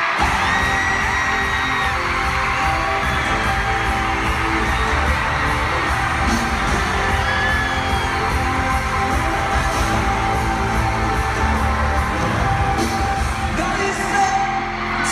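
Live pop band playing loudly in an arena, with steady drums and bass, heard from among the audience, while fans scream and whoop over the music in short high cries.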